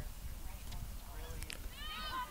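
Faint, distant shouts and chatter from players and spectators across a field hockey pitch, with a couple of sharp clicks about halfway through.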